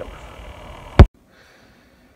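Faint background noise, then a single loud, sharp click about a second in, where the recording cuts abruptly to a much quieter one with only very faint noise.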